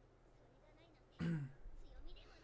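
A person clearing their throat once, short and loud, a little over a second in, over faint dialogue playing in the background.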